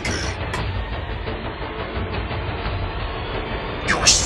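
Steady rumbling noise with no distinct events.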